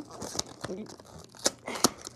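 Small cardboard mini-figure box being torn open by hand: tearing and crinkling card, with two sharp snaps near the end.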